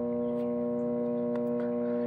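An 1100-watt microwave oven running: a steady low electrical hum that holds one pitch without change.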